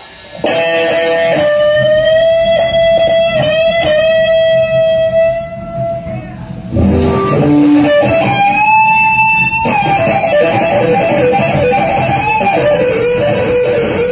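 Live electric blues band: a lead electric guitar plays long sustained, bent notes with vibrato over drums and bass guitar. About halfway through the band drops briefly, then comes back in with a high held note and quicker runs of notes.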